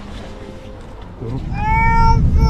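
A small child's high-pitched, drawn-out call near the end, one long note falling slightly in pitch, over a low rumble that swells from about a second in.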